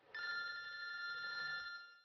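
Mobile phone ringing with an incoming call: one steady electronic ring tone, several pitches held together, lasting nearly two seconds before it stops.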